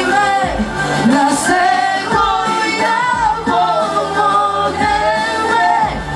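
Pop song: sung vocals over a backing track with a low repeated beat.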